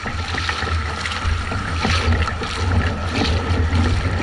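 Surfski paddling in choppy water: the paddle blades splash in and out with each stroke, regularly about once a second or faster, over water slapping the hull and wind rumbling on the microphone.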